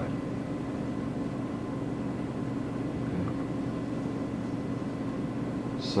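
Steady low mechanical hum of a running fan, unchanging throughout, with a man's voice coming in right at the end.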